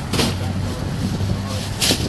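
Outdoor background with a steady low hum and two brief rustling noises, one just after the start and one near the end.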